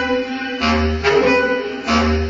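Bass clarinet playing long low notes, each sustained and then re-attacked about every second and a quarter, with a deep swell underneath at each new note.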